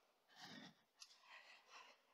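Near silence: room tone with a few faint soft sounds and a small click about a second in.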